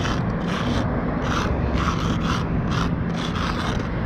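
Felt tip of a paint marker scraping across rough concrete in a quick series of short strokes, roughly two or three a second, as letters are written. A steady low rumble runs underneath.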